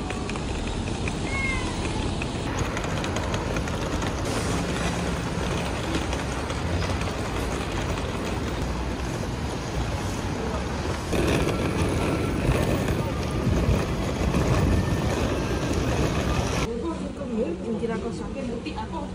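Hard-shell rolling suitcase being pulled, its small wheels rumbling and rattling over paving stones and asphalt, louder in the last several seconds, then stopping suddenly near the end.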